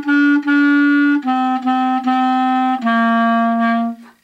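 A B-flat clarinet playing a simple beginner tune in tongued quarter notes. It steps down from written E through repeated written D's to a final written C, held about a second and then cut off.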